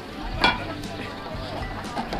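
A single sharp clink with a brief ring about half a second in, from a metal wine-flight holder and its tasting glasses being knocked as a paper flight card is slotted into it.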